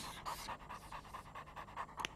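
A puppy panting quickly and faintly, in an even run of short breaths.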